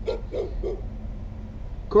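A dog making three short, low sounds in the first second, over a steady low background rumble.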